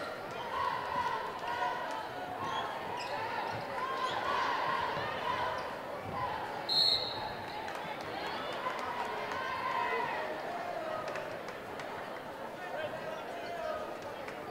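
A basketball dribbled on a wooden gym floor amid voices from the crowd and players, echoing in the gymnasium. Just before seven seconds in, a referee's whistle gives one short, high blast, the loudest sound, calling a foul that stops play.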